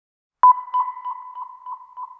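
Opening of a reggae track: after a brief silence, a single high sonar-like ping sounds about half a second in, its echo repeating about three times a second and fading.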